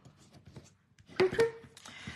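A bone folder rubbed along a folded cardstock strip to crisp the crease, making soft scraping sounds. A little over a second in there is a louder scrape with a brief vocal sound.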